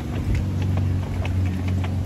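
Steady low rumble of wind on a handheld phone's microphone while walking outdoors, with a few faint ticks.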